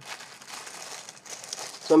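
Clear plastic packaging around a pair of toe socks crinkling as it is handled and lifted, an irregular crackling that runs on until speech comes in near the end.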